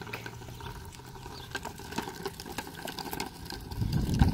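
A harnessed horse walking on dirt while dragging a pair of pole false shafts: irregular light clicks and scuffs of hooves, harness and shaft ends on the ground. A low rumble comes up near the end.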